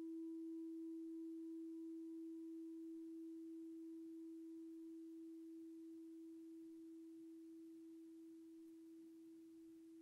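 A meditation bell's single low tone ringing on and slowly fading away, its faint higher overtone dying out in the first couple of seconds.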